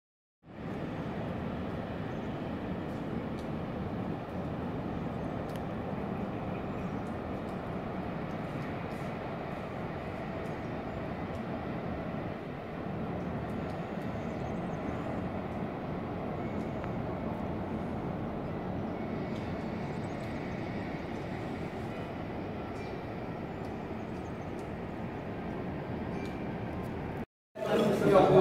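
Steady outdoor rushing noise with a few faint clicks, starting about half a second in.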